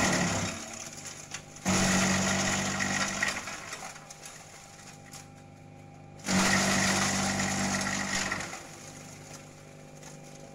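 A 2 HP electric motor drives a Kelani Komposta KK100 compost shredder, which runs with a steady hum. Twice, about two seconds in and again about six seconds in, it loads up with a loud chopping racket for a couple of seconds as leafy green branches are fed in and shredded.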